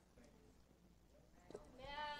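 Near silence with faint room tone. In the last third a person's voice comes in faintly with one held, steady-pitched sound.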